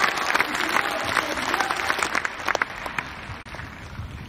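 Large audience applauding, many hands clapping together, the clapping thinning out and fading about three seconds in.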